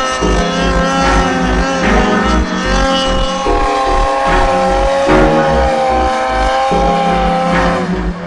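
Background music: an instrumental passage of long held notes and chords over a steady low drum beat.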